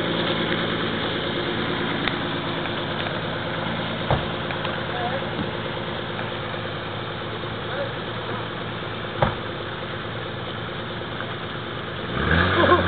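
Four-wheel-drive vehicle's engine idling steadily, with two short knocks about four and nine seconds in.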